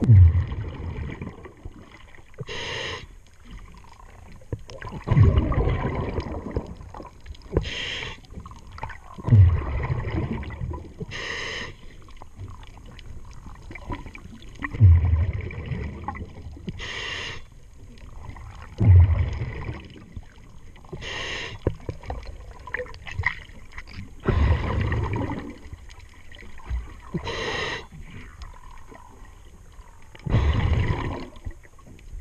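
A diver breathing through a regulator underwater. A short hissing inhale alternates with a low rumbling burst of exhaled bubbles, in a steady cycle of about one breath every five seconds.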